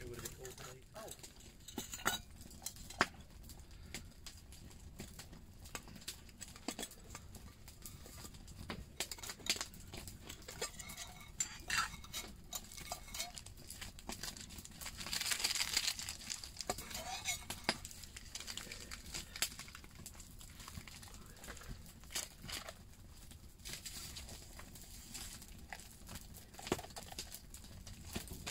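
Wood campfire crackling with many irregular sharp pops, along with small handling sounds of a metal camping mug and a paper sachet. A brief rushing hiss comes about fifteen seconds in.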